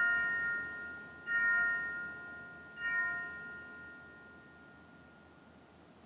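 An altar bell is struck three times, about a second and a half apart. Each stroke rings and fades out, marking the elevation of the chalice at the consecration.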